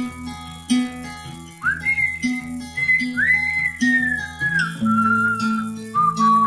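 A whistled melody over strummed acoustic guitar chords, in the instrumental break between verses of a simple folk-style song. The whistle slides up into a few long held notes while the guitar strums steadily underneath.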